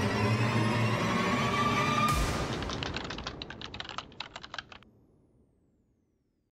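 Film soundtrack effects: a loud, dense rumble with a slowly rising tone that ends abruptly about two seconds in. Then comes a fading run of irregular rapid clicks like typing, which dies away by about five seconds.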